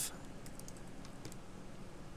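Computer keyboard keys pressed: a few faint, short clicks of keystrokes.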